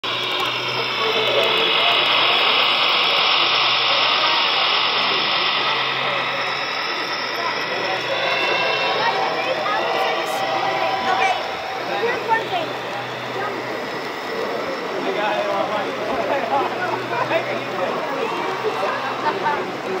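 Model train of a diesel locomotive and tank cars rolling past close by: the running noise of the wheels on the track, loudest over the first few seconds, over a steady low hum. Crowd chatter in the background.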